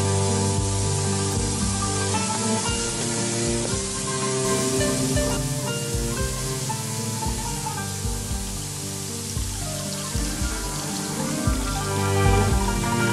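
Water running steadily from a bathtub mixer tap into the tub, a continuous hiss, under soft background music.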